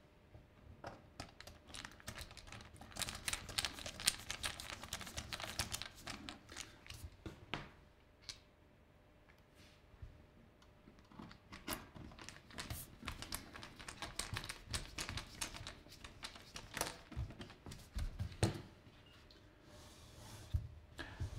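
Small screwdriver driving screws into the metal case of a network switch, a rapid run of light clicks and ticks. It comes in two bursts, one per screw, with a quieter pause of a few seconds between them.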